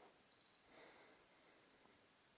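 Near silence, broken about half a second in by one short, faint, high-pitched electronic beep.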